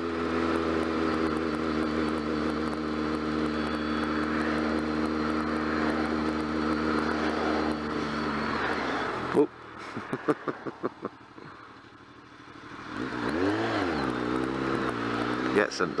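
BMW motorcycle engine running at steady revs under wind noise, then easing off about eight seconds in as the bike slows for queuing traffic. A sharp click and a quick run of ticks follow, the engine drops to a low idle, then the revs rise and fall once before settling into a steady pull.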